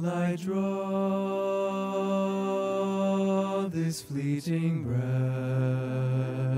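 Two male voices singing in harmony into microphones, holding a long chord, then a few short notes with quick breaths, then settling into another long held chord.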